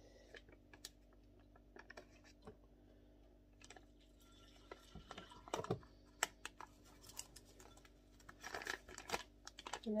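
Faint scattered clicks and crinkles of a paper porridge sachet being handled and its milk and oats tipped into a ceramic bowl, with a slightly louder cluster of rustles near the end.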